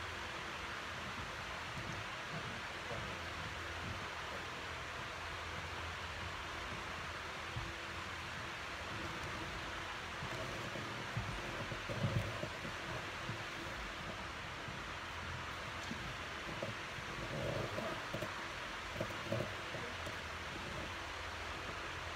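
Steady hiss of a running electric fan in the room, which is loud enough to drown out the microphone. A few faint low bumps come through about halfway and again later.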